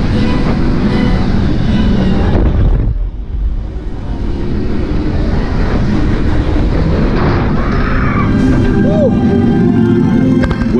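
Roller coaster train running along its track: a loud, steady rumble that eases briefly about three seconds in, with the ride's music playing over it.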